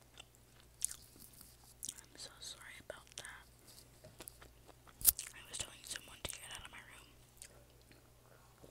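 Close-miked chewing and wet mouth sounds picked up by an earphone microphone held at the mouth. Scattered sharp clicks run through it, the loudest about five seconds in.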